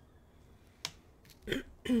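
A single sharp click a little under a second in, then a short breath-like vocal sound and a voice beginning to speak near the end.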